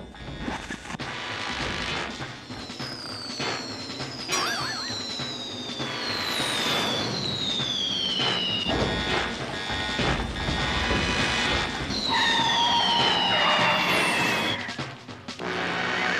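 Cartoon sound effects for a plane coming in to land: several long falling whistles over a loud rushing noise, with background music.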